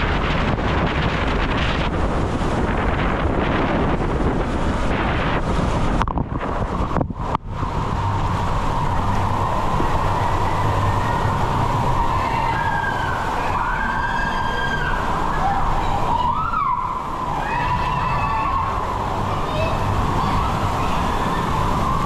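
Loud, steady rushing of water and a rider sliding down an enclosed waterslide tube, with a short dip about six to seven seconds in. Later the rushing goes on under some short squeaky rising and falling tones.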